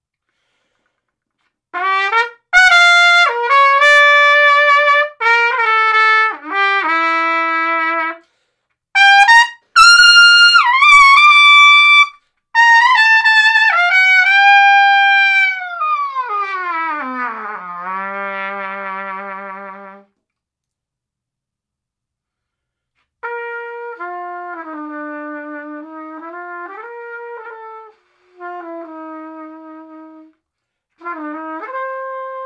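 Trumpet played through a plastic BRAND Lead mouthpiece: loud high-register lead phrases, then a long falling glide down to a wavering low note. After a pause of about three seconds, a soft, quiet phrase near the end shows the mouthpiece can also be played softly.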